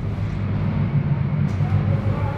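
Steady low mechanical hum with a droning pitch, with one sharp click about one and a half seconds in.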